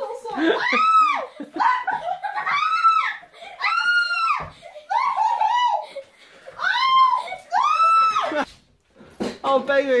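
High-pitched shrieking and laughter from people being squirted with water pistols, about one rising-and-falling shriek a second, with a short break midway and quick chatter at the end.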